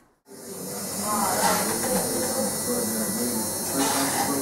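Electric tattoo machine buzzing steadily as it works on skin, starting suddenly just after the start, with a voice faintly behind it.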